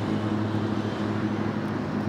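Street traffic noise: cars on the road with a steady low engine hum.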